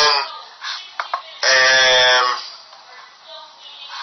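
A man's voice holding a drawn-out hesitation sound, with two small clicks just before it.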